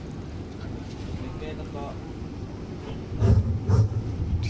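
Faint, distant talk over steady outdoor background noise. Near the end come a couple of loud, deep booms.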